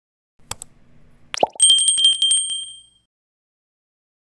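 Subscribe-button animation sound effects: a click about half a second in, a short rising swoop, then a bright notification bell ringing with a fast trill for about a second and a half before fading out.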